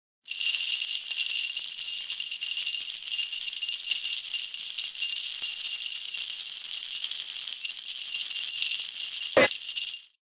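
Sleigh bells shaking continuously, a bright steady jingling that cuts off sharply at the end.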